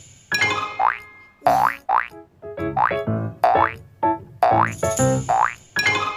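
Bouncy, cartoon-style background music with short plucked notes and repeated quick rising 'boing'-like pitch slides.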